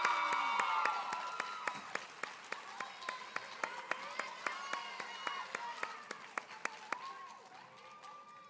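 Audience applauding, with cheering voices over the clapping. It is loudest at the start and thins out to scattered claps as it fades toward the end.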